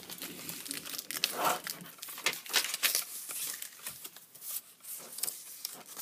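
A sheet of paper rustling and crinkling as it is handled and laid flat onto a plastic toy's design platform, in irregular bursts with a few sharp ticks.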